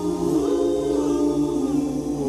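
Male vocal group singing a cappella in close harmony, with a bass voice underneath; the voices hold notes and move together from chord to chord.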